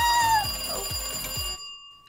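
An old-style telephone bell ringing steadily, then cutting off about a second and a half in, with a faint ring lingering briefly. A person's excited squeal overlaps the first half second.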